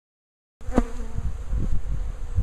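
A honeybee swarm buzzing steadily around an opened hive box, starting about half a second in, over a low rumble, with a sharp knock just after it begins.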